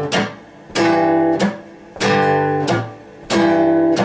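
Acoustic guitar strumming a repeating blues rhythm. Each ringing chord is followed by a short muted, percussive stroke of the hand hitting the strings, the pair repeating about every 1.3 seconds.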